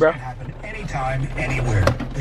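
Voices talking inside a car cabin, over a low steady hum, with a sharp click near the end.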